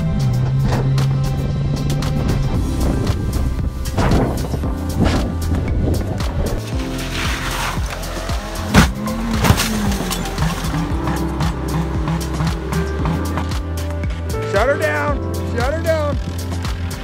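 Background music playing throughout, with a sedan's heavy crash impact about nine seconds in as the airborne car slams nose-first into a dirt bank.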